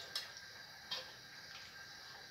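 Two light clicks from a metal bowl and spoon, one just after the start and one about a second in, as the last of the sauce is tipped out over the tray of eggplant and meatballs.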